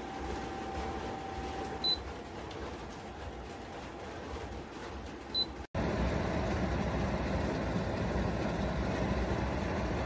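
Flying Pig HEPA air purifier's fan running with a steady whoosh, and two short high beeps from its touch-button panel, about two and five and a half seconds in. After a sudden break just past halfway, the fan sound is louder and fuller.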